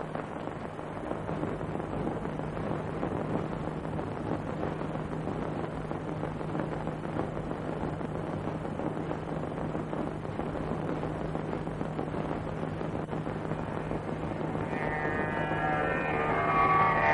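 A steady rushing noise with a low hum underneath, with no clear events in it. Near the end, plucked-string music fades in.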